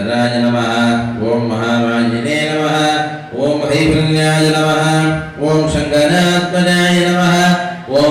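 Male voice chanting a Hindu temple mantra in long, held notes that step up and down in pitch, with short breaks for breath every two or three seconds.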